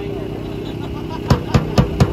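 A steady low hum with a faint voice under it, then four sharp clicks or taps in quick succession, about a quarter of a second apart, in the second half.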